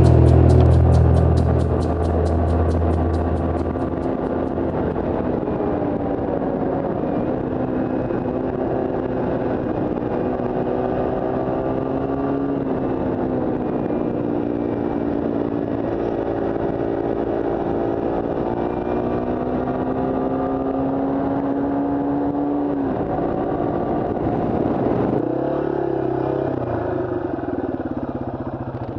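Yamaha TW200's air-cooled single-cylinder four-stroke engine running under way, its pitch rising and falling with throttle and gear changes and dropping away about 23 seconds in. Rock music fades out during the first few seconds.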